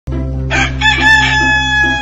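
A rooster crowing one long cock-a-doodle-doo, starting about half a second in, over background music with a low steady drone.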